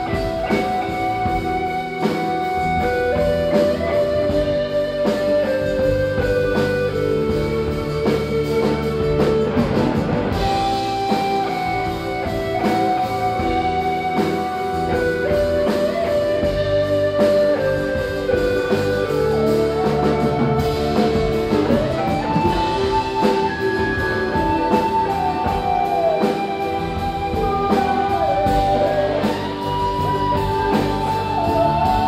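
A live blues-rock band plays with no singing: an electric guitar leads with long, sustained notes that step up and down and bend in pitch, over keyboard and acoustic guitar.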